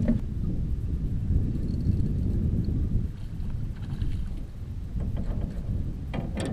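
Wind rumbling on the microphone, with a few faint clicks and taps about three to five seconds in.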